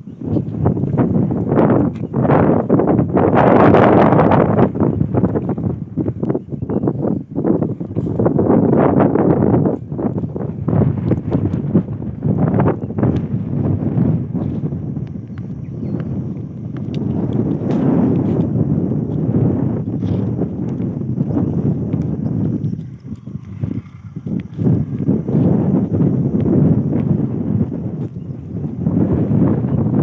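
Wind buffeting the microphone in a loud, swelling rumble, with irregular crunching clicks on top.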